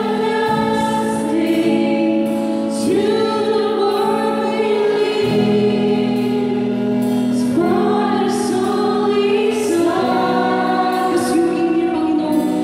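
Live church worship band: several women singing together into microphones, in held notes that shift every second or two, over an electric guitar and a drum kit with cymbals.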